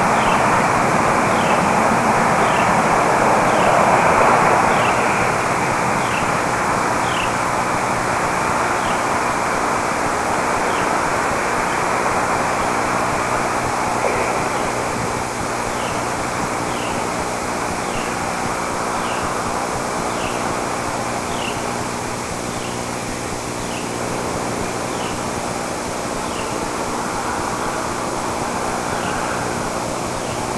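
Steady rushing outdoor noise with a low hum under it, and a short high-pitched chirp repeated about once a second for most of the time, pausing for a few seconds in the middle.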